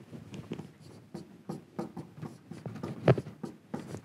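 Marker pen writing on a whiteboard: a quick run of short strokes and taps, with one louder stroke about three seconds in.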